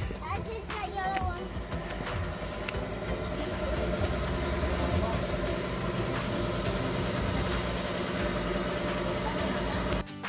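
Bumper car driving across the arena floor: a steady electric-motor hum with running and rolling noise.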